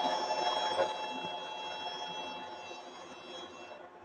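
Rotary screw air compressor with a permanent-magnet motor on a variable-frequency drive, giving a steady whine of several held tones that fades away over a few seconds as the machine shuts down. It stops because it has reached pressure and no compressed air is being drawn.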